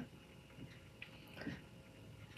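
Near silence: room tone with a few faint, short soft sounds around the middle.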